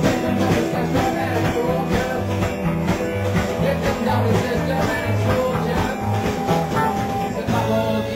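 Live anti-folk rock band: a man and a woman singing together over strummed guitar, a bass line and drums.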